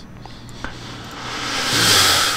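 A man breathing out into a headset microphone: a breathy hiss that swells louder over about a second near the end.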